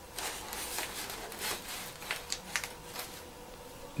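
Hands setting soft plastic seedling cups into a plastic tray and pressing potting soil around petunia seedlings: faint, irregular rustling and crackling scrapes.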